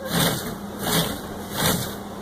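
GoPiGo robot car's small DC gear motors whirring in three short surges about three-quarters of a second apart, as the robot drives forward, stops and reverses. Its ultrasonic distance sensor keeps seeing the obstacle too close, so the robot hunts back and forth.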